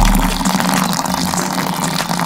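Thick liquid face cleanser pouring in a steady stream into a stone mortar partly full of liquid, splashing and frothing as it lands.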